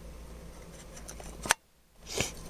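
A steady low hum, broken about one and a half seconds in by a single sharp click, after which the sound cuts out almost to silence.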